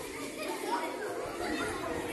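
Many children's voices chattering at once in a low, steady murmur, with no single voice standing out, from a large group of schoolchildren sitting close together.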